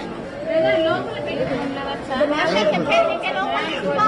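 Voices talking, with several people speaking over one another.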